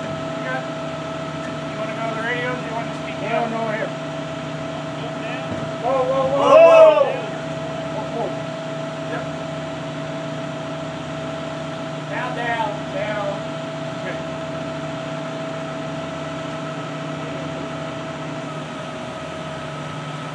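A machine running steadily at an unchanging pitch, with short voices calling out over it a few times, loudest about six to seven seconds in.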